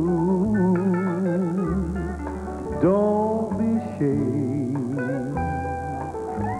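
Live country music: male singing in long, held notes with a marked vibrato, at times in two-part harmony, over guitar and piano accompaniment. A new note comes in with an upward slide about halfway through.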